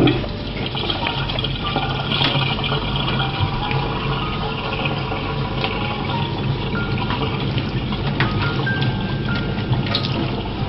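Kitchen faucet running steadily into a metal sink, with background music playing over it.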